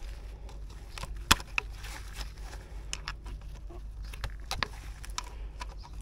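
Irregular light clicks and rustling of gloved hands working plastic connectors and wiring harness on a diesel truck engine, with one sharper click about a second in. A low steady hum runs underneath.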